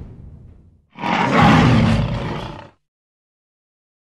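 A single lion roar sound effect, about two seconds long, starting about a second in.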